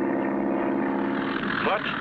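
Engine drone of a light single-engine propeller plane, a steady pitched hum that drops away about one and a half seconds in.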